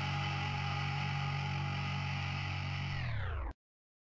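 The last held chord of an anarcho-punk song, played from a vinyl record: distorted guitar and bass ringing out steadily. About three seconds in, the whole chord sags downward in pitch, like a record slowing, and then cuts off abruptly into silence.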